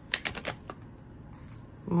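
Quick light clicks of oracle cards being handled as one is drawn from the deck: a rapid run of about five in the first half-second and one more shortly after.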